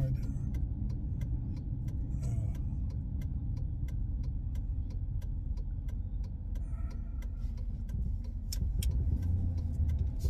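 Pickup truck driving slowly, heard from inside the cab: a steady low engine and road rumble, with a string of light, irregular clicks.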